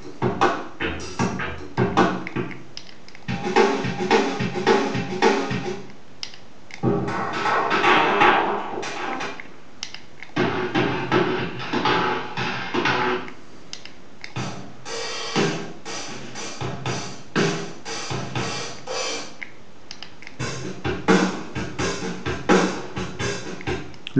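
Built-in drum-machine rhythms of a DigiTech JamMan Solo XT looper pedal, several drum-kit patterns played one after another and switching every few seconds, the last a shuffle.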